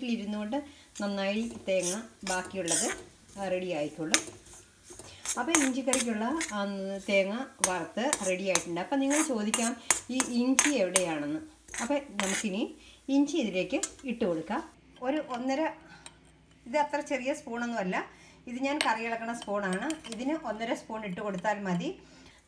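A metal spatula scrapes and clinks against a steel kadai over and over as dry-fried chopped ginger is stirred. A woman's voice talks over it through most of the stretch.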